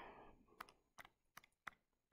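Faint, separate key clicks, about four of them a third of a second apart, as numbers are keyed in to work out a calculation.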